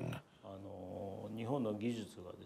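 A man's voice talking quietly, set well below the level of the surrounding narration, after a brief near-silent gap at the start.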